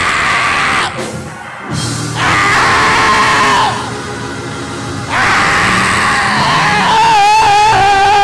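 A man shouting and calling out in long, drawn-out vocal phrases through a microphone over church music, in three loud stretches; the last is held with a wavering pitch.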